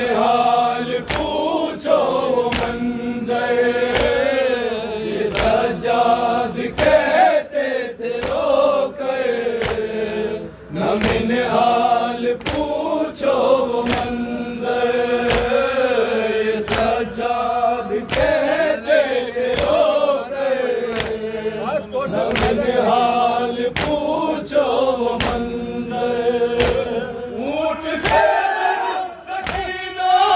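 A group of men chanting an Urdu noha (Muharram lament) in unison, with a steady, regular beat of open palms striking chests (matam) a little more than once a second.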